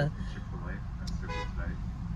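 Low, steady rumble of a car's engine and cabin, with a brief, faint pitched sound a little over a second in.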